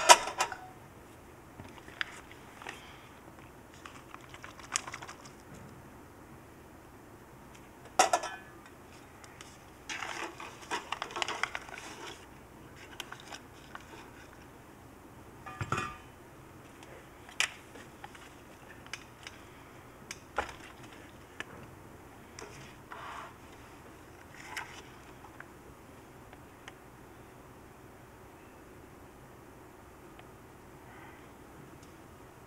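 Clinks and clanks of a stainless steel ultrasonic cleaner's lid and tank being handled. The knocks come at irregular moments, with a cluster of small rattles about ten seconds in, and die away in the last few seconds.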